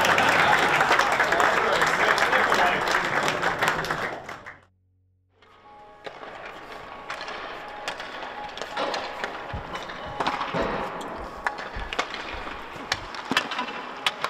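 A room full of people applauding for about four and a half seconds, cut off abruptly. After a second of silence, hockey practice on an ice rink: skates scraping and sharp clacks of sticks and pucks.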